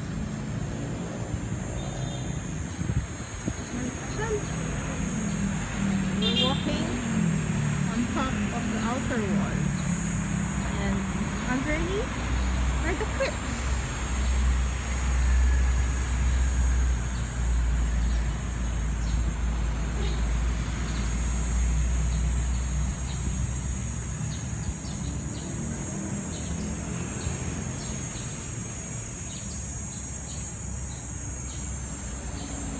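Outdoor city-park ambience: a steady high insect drone, with road traffic rumbling louder from about twelve seconds in until past twenty seconds.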